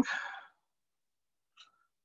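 A man's voice trailing off breathily at the end of a spoken phrase, then silence broken only by one faint short click about a second and a half in.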